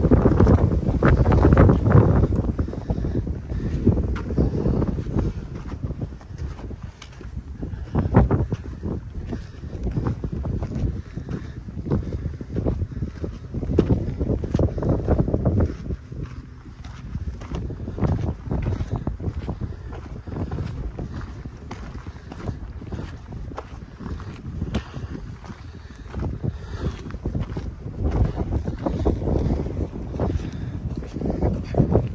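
Wind buffeting the microphone in gusts, strongest in the first couple of seconds, over the crunch of footsteps on a dirt and gravel trail.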